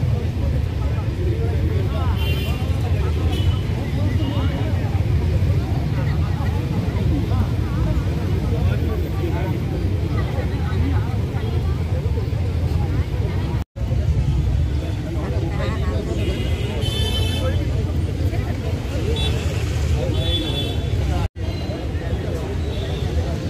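Babble of a large seated crowd on a street, over a steady low rumble of traffic. A few brief high-pitched tones sound now and then, and the sound cuts out for an instant twice in the second half.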